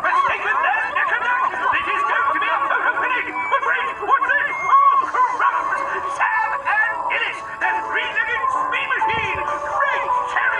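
Cartoon soundtrack: rapid overlapping chattering voices with no clear words, over music.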